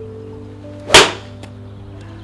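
A golf iron striking a ball off a hitting mat: a single sharp crack about a second in.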